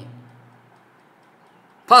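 A man's lecturing voice trailing off, a pause of about a second, then his speech starting again near the end.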